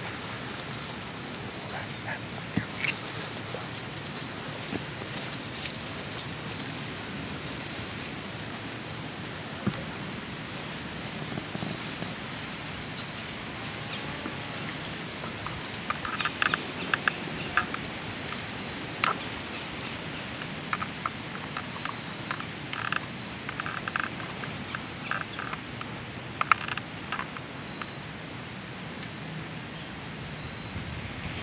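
Steady outdoor background hiss in wooded, leaf-covered ground, with scattered rustles and sharp clicks that cluster in the second half.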